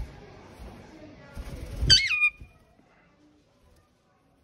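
Alexandrine parakeet giving one short, loud squawk about two seconds in. Its pitch wavers and then drops, and a brief rustle comes just before it.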